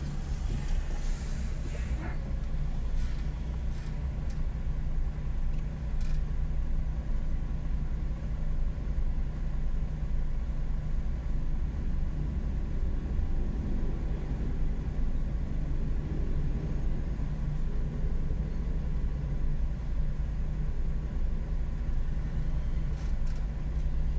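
Steady low rumble of a car being driven through city streets: engine and tyre noise at an even level.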